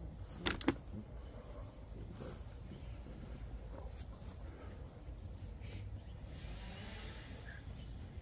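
Two sharp clicks about half a second in, over a low steady rumble.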